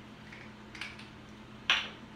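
A single sharp plastic click from a small squeeze bottle being handled, likely its cap snapping, with a softer tick before it and a faint steady low hum underneath.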